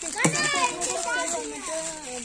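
Children's voices shouting and calling out excitedly as they play, with one loud high-pitched shout about a quarter of a second in.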